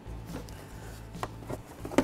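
A few light taps and rubs as gloved hands grip and handle a spin-on oil filter under the plastic engine cover, over a low steady hum.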